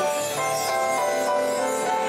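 Piano played live, a melody of short notes changing several times a second over chords.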